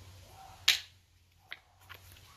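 Neodymium magnet snapping onto a steel hammer head: one sharp click about two-thirds of a second in, then a fainter click a little later.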